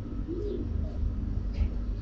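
Steady low hum under faint shop background noise, with one short rising-and-falling tone about half a second in.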